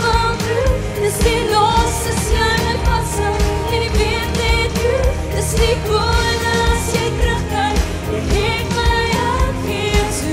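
A woman singing a pop song live into a handheld microphone, with some long held notes, over backing music with a steady drum beat.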